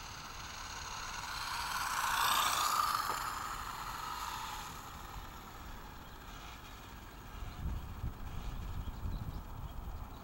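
Radio-controlled car driving fast over asphalt, heard from on board: its motor and tyre noise swell to a peak about two to three seconds in, then fade. Low, uneven rumbling comes in over the last few seconds.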